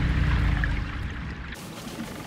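Low, muffled underwater rumble that cuts off abruptly about one and a half seconds in, giving way to a quieter, steady hiss of water around a boat.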